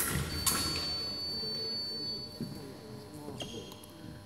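Electric sabre scoring machine sounding a steady high-pitched tone for about two seconds, the signal of a touch registered, with a sharp click near the start; a shorter, lower beep follows near the end, over murmuring voices in the hall.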